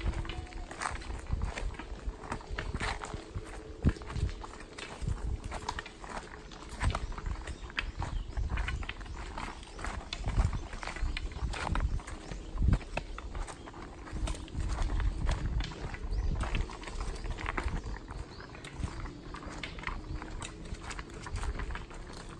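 Footsteps of several hikers on a loose, rocky trail: irregular clacks and crunches of shoes on stones, running steadily throughout.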